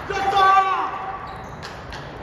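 One loud, drawn-out human shout that falls in pitch at the end, close to the microphone, then a single sharp click of a table tennis ball about one and a half seconds in.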